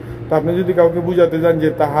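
Only speech: a man narrating in Bengali.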